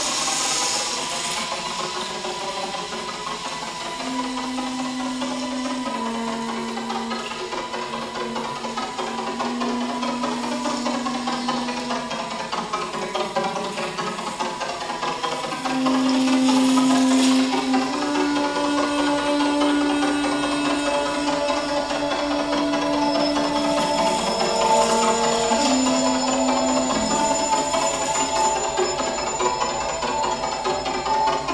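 Experimental electro-acoustic improvisation: a slowly shifting wash of sound over which long held notes enter from about four seconds in, stepping to a new pitch every second or two. It grows louder about halfway, and higher sustained tones join near the end.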